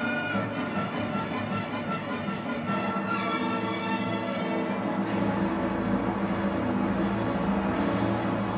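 Orchestral music with violins, sustained string phrases over lower strings; about five seconds in the higher notes drop away and the lower parts carry on.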